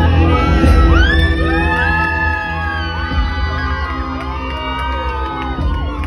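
Live rock band playing loudly through a pub PA, with electric guitar, drums and heavy bass. From about a second in, high notes slide up and down over the steady backing, with some shouting from the crowd.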